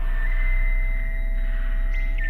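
Background drone music: a steady low hum under a high held tone that steps slightly up in pitch early on.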